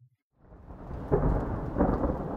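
Thunderstorm sound effect: thunder rumbling over rain, fading in about half a second in and building.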